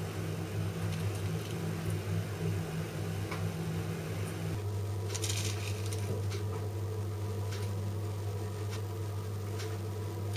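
A steady low hum, with faint rustling and light taps as grated cheese is piled onto baking paper on a metal oven tray. There is a brief louder rustle about halfway through.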